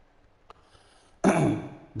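About a second of near silence, then a man briefly clears his throat.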